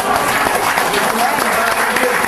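Studio audience applauding, steady and dense, with faint voices underneath.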